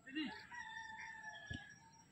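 A long drawn-out animal call at a fairly steady pitch, lasting about a second and a half, with a light thud about one and a half seconds in.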